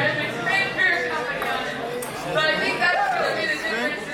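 Speech only: people talking, with crowd chatter behind.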